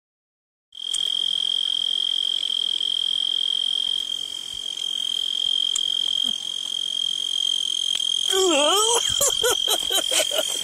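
Crickets singing: one continuous, steady, high-pitched trill that starts suddenly under a second in. A voice comes in near the end.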